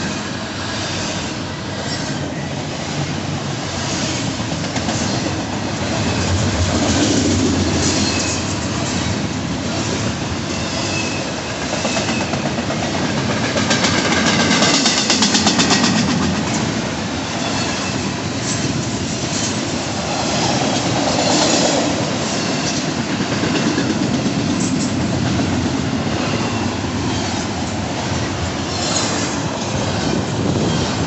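Double-stack intermodal container cars of a freight train rolling past: a steady rumble of steel wheels on rail with repeated clicking over rail joints and some metallic wheel squeal, loudest in the middle.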